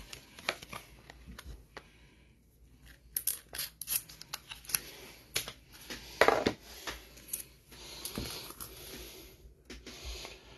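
Plastic wrapping crinkling and tearing as a stuck trading card is worked free, a string of sharp crackles and snaps with a quieter pause about two seconds in and the loudest crackle just past the middle.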